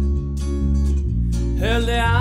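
Live pop-rock band accompaniment with electric guitars and bass playing sustained chords, then a male singer's voice coming in near the end.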